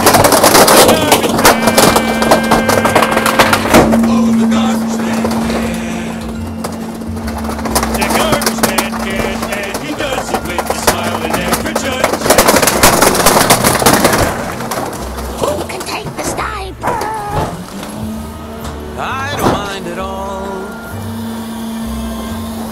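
Rear-loader garbage truck's hydraulic packer blade crushing plastic Power Wheels ride-on toys, with loud crunching and cracking in two long stretches, one at the start and one about halfway, over the steady hum of the truck's engine and hydraulic pump. The hum rises in pitch near the end as the packer works again.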